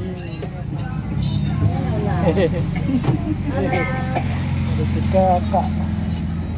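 Steady low engine hum of an open-sided tourist road train running, heard from a seat on board, with people talking over it.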